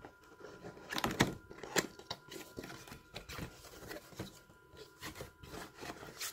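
Cardboard box flaps being pried and pulled open by hand: a scatter of sharp clicks and short papery rustles, the loudest a little after a second in and again just before two seconds.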